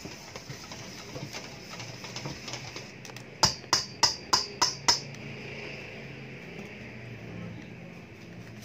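A metal spoon tapped six times on the rim of a stainless steel mixing bowl, sharp ringing clicks about three a second, knocking the egg-yolk mixture off the spoon.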